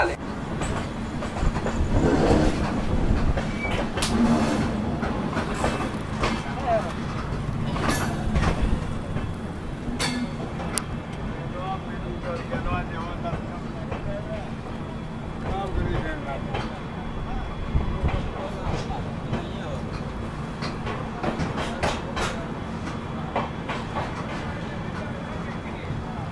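LHB passenger train coach rolling slowly along a station platform: a steady low rumble and hum with occasional clicks and knocks from the wheels.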